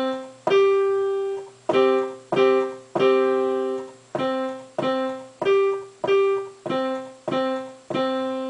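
Digital piano playing a simple beginner's tune with both hands: middle C and the G above it, struck one at a time or together, at about two notes a second. Some notes are held longer as half notes.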